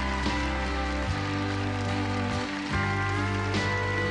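Live band playing an instrumental passage with no vocals: acoustic and electric guitars over bass and drums, changing chords about every second.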